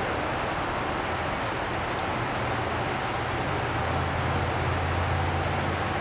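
Steady low hum under an even hiss: the air-handling blowers of an inflated fabric sports dome running.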